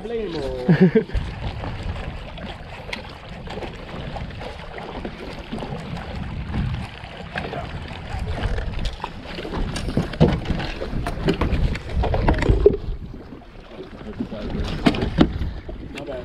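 Wind buffeting the microphone and water lapping against a bass boat's hull, with scattered light knocks and clicks; a brief voice in the first second.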